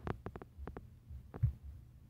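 Handling noise on the recording phone: a quick run of small taps and knocks, then a louder thump about a second and a half in, over a low steady hum.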